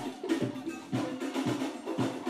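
Live drums and percussion playing a rhythm at low level, with sharp wood-block-like clicks and faint short pitched notes underneath.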